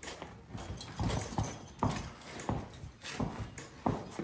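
Hooves of a harnessed draft mule team stepping on the barn floor: a handful of irregular, unevenly spaced thuds as the mules shift their feet.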